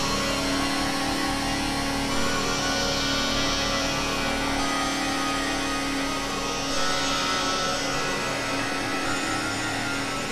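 Electronic music from a virtual CZ synthesizer in a microtonal tuning (12 notes of 91-tone equal temperament): a held low drone under a dense, hissing texture that swells and fades several times.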